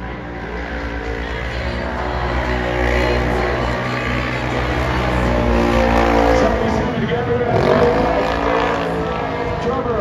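Side-by-side UTV race engine running hard at high revs as the machine drives through snow, getting louder over the first six seconds and then changing pitch as the revs rise and fall.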